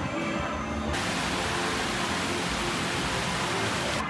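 Background music with a loud, steady hiss laid over it. The hiss starts suddenly about a second in and cuts off suddenly.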